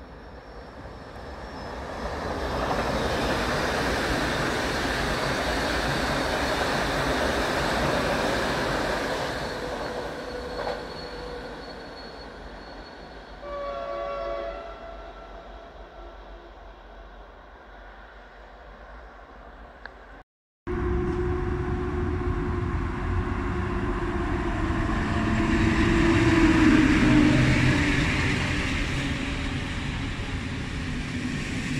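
Passenger trains passing through a station. For the first several seconds there is a swelling, steady rush of wheels on rail that then fades, and a short train horn blast sounds about halfway through. After an abrupt cut, a PKP Intercity passenger train rolls past close by, loudest near the end.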